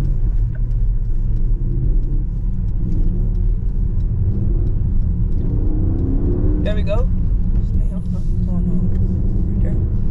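Steady low rumble of road and engine noise inside a moving car's cabin. A short voice sound breaks in about seven seconds in.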